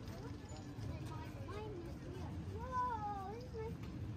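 Busy street ambience with passersby's voices over a low rumble of traffic. About two and a half seconds in, a voice gives one long wavering call that rises and falls for about a second, the loudest sound here.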